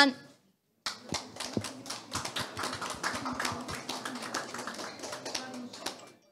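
Small audience applauding with scattered hand claps. The applause starts about a second in and cuts off suddenly at the end.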